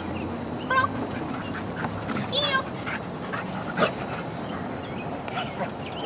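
A dog giving a few short, high-pitched whining cries, about a second in and again around two and a half seconds, with a sharp click near four seconds.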